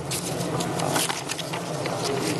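Sheets of paper rustling and being handled close to a podium microphone: a rapid, irregular run of crackles and ticks over a steady low hum.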